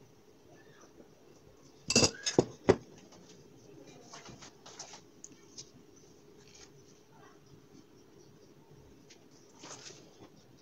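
Kitchen clatter of a metal baking tray being handled: three sharp, loud knocks about two seconds in, followed by lighter scattered clicks and taps.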